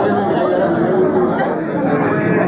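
Several people talking at once: continuous overlapping conversation with no single clear voice.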